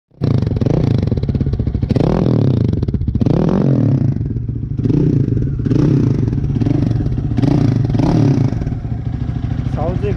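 Hanway (Scomoto) Scrambler 250's single-cylinder, air-cooled four-stroke engine running through its chrome exhaust and being revved by hand at the throttle: three long revs in the first four seconds, then a run of shorter, quicker blips, settling back toward idle near the end.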